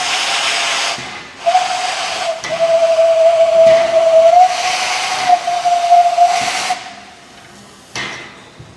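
Steam whistle of the ČSD class 310.0 tank locomotive 310.0134: one short blast, then after a brief pause one long blast of about five seconds that shifts slightly in pitch partway through, over a loud hiss of steam.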